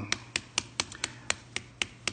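A quick, even run of about nine sharp clicks, four or five a second.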